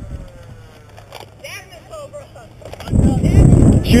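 Faint distant voices, then from about three seconds in a sudden loud low rumble of wind buffeting the wearable camera's microphone.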